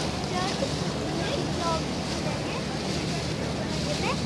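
Passenger ferry's engine droning steadily, with wind and the rush of water past the hull.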